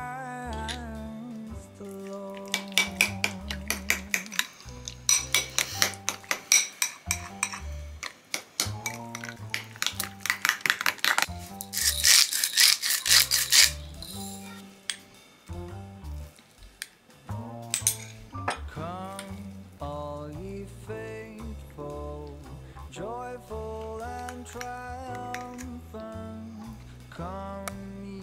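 Metal spoon stirring a thick sauce in a cut-glass bowl: rapid clinks and scraping against the glass, getting louder and then stopping about halfway through. Background music plays throughout.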